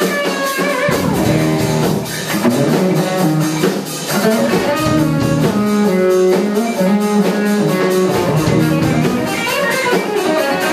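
Live rock trio of electric guitar, electric bass and drum kit playing. A run of falling guitar notes leads in, and about a second in the bass and drums come in strongly under the guitar.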